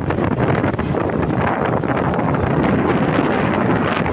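Wind buffeting the microphone of a phone filming from a moving vehicle, a steady loud rush with rapid flutter, over the vehicle's running and road noise.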